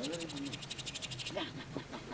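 Faint voices talking, behind a fast, even, fine ticking that fades out about a second in.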